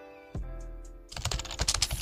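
Keyboard-typing sound effect: a rapid run of clicks starting about a second in, as on-screen text types itself out, over background music.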